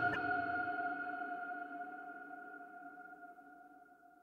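Music: the last note of a track rings on after a final drum hit and fades away evenly to silence.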